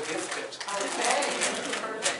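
Audience applause, a dense patter of hand claps, with a voice speaking over it.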